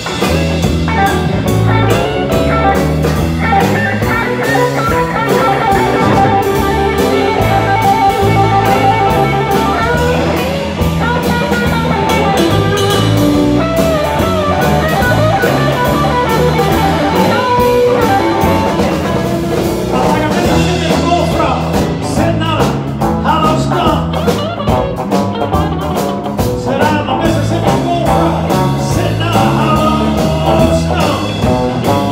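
Live band playing a blues number: electric guitar over a stepping bass line and drum kit. The drums get busier about two-thirds of the way through.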